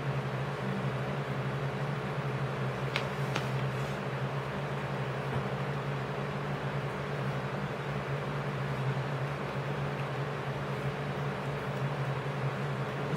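A steady low hum with an even hiss, the constant background noise of a room such as a running fan. Two faint clicks come about three seconds in.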